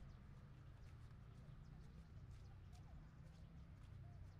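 Faint outdoor ambience: a steady low rumble with scattered faint ticks and a few small, short chirps.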